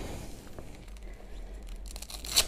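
Faint rustling and light scuffing of an Icon Field Armor Stryker vest's mesh and armor panels being handled as it is pulled on over a helmet.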